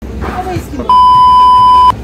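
A loud, steady, single-pitched bleep tone lasting about a second, starting about a second in and cutting off suddenly. It is the standard 1 kHz censor-style bleep edited onto the soundtrack.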